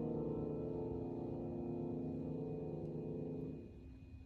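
Grand piano chord held and slowly dying away, then cut off sharply about three and a half seconds in.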